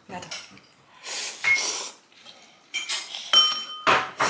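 Metal cutlery clinking against ceramic bowls during a noodle meal, with a few ringing clinks in the second half.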